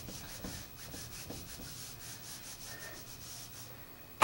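Felt whiteboard eraser rubbing across a whiteboard in quick back-and-forth strokes, about four a second, stopping near the end.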